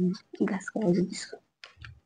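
Short bursts of speech with light clicking sounds in between.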